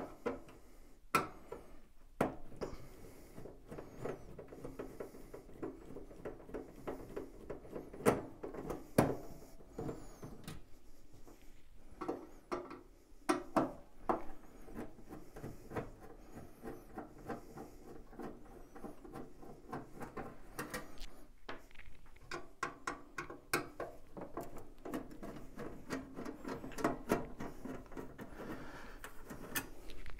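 A hand screwdriver backs screws out of the sheet-metal combustion chamber cover of a wall-hung gas boiler, making scratchy grinding with many small ticks, while the cover is handled. Several sharp knocks stand out, about a second in, at around eight and nine seconds, and twice near thirteen seconds.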